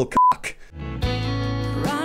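A short, single-pitched censor bleep covering a spoken word. About three quarters of a second later, background music with steady sustained bass notes starts and carries on.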